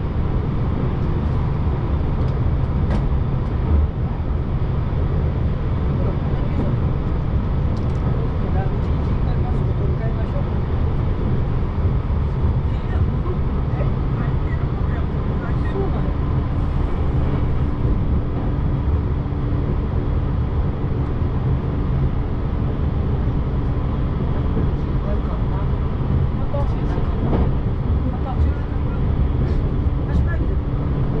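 Steady running rumble of an electric train heard from inside the carriage, wheels rolling on the rails at speed, with a faint steady hum coming in about halfway.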